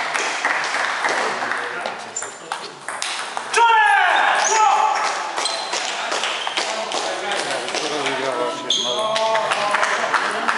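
Table tennis rally: quick sharp clicks of the ball on paddles and table, ended about three and a half seconds in by a loud cry falling in pitch, followed by voices in a large hall.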